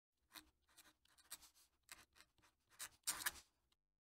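Fountain pen nib scratching across paper, writing a cursive signature: a faint run of short, uneven strokes, the longest and loudest about three seconds in, stopping shortly before the end.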